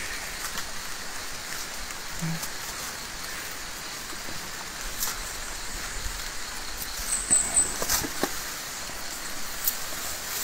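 Steady outdoor hiss with scattered faint rustles and snaps of vegetation as an elephant forages in the undergrowth close by. A brief high chirp comes about seven seconds in.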